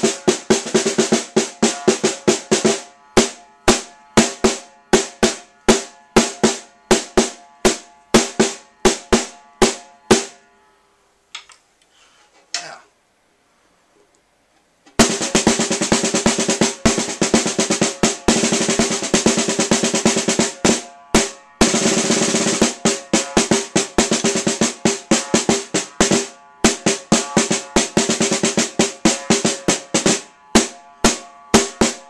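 Marching snare drum played with sticks in a drumline cadence: crisp accented strokes and rolls with a ringing snare tone. The drumming stops about ten seconds in, leaving a few seconds of near quiet with a few faint knocks, then starts again with dense rolls.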